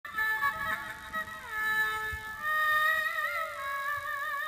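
Instrumental music: a melody of long held notes that slide between pitches, taking on a wavering vibrato in the last second or so.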